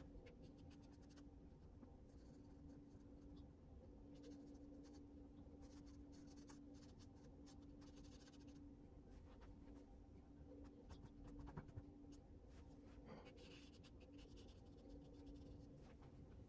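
Faint scratching of a soft pastel stick on the painting surface, in short irregular strokes, over a steady low hum.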